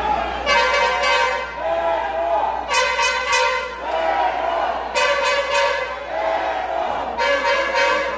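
A horn in the crowd blowing four blasts, each about a second long and about two seconds apart, with voices shouting between the blasts.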